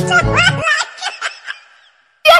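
Music with a steady beat cuts off about half a second in, overlapped by a person's short laugh in several quick rising bursts that fades out by about a second and a half.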